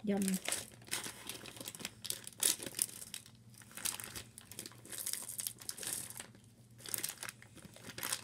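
A plastic M&M's candy bag crinkling and crackling in the hands as it is torn open, in irregular rustling spurts.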